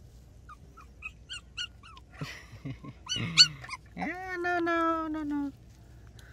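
A puppy whimpering and crying: a string of short high squeaks, then a loud squeal about three seconds in, and a long drawn-out whining cry near the end.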